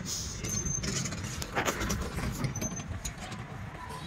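Street ambience: a steady low rumble of traffic, with a brief rushing burst about one and a half seconds in and a few faint high chirps.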